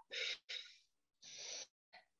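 A woman's breathing, three short, faint breaths, as she holds a deep forward-bend yoga pose.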